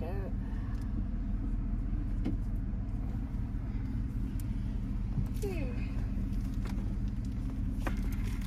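Car engine idling, a steady low hum heard inside the cabin, with a few faint clicks.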